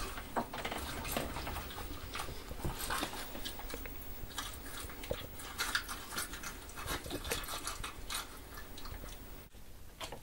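Foley sound effect for a horror film being performed in a recording booth: a dense, irregular run of crunches and clicks, like chewing, that breaks off near the end.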